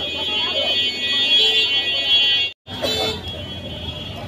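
A high-pitched electric vehicle horn held steadily for about two and a half seconds. It cuts out for a moment and then sounds again more weakly for about a second, over street traffic and voices.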